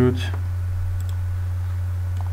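Two faint computer mouse clicks in quick succession about a second in, over a loud steady low electrical hum.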